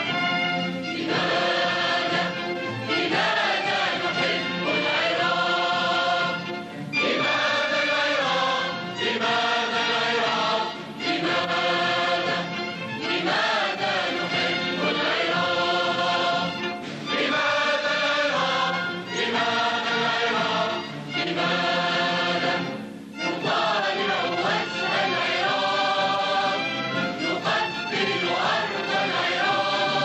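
A large choir singing with an orchestra, in long sung phrases broken by short breaks between lines.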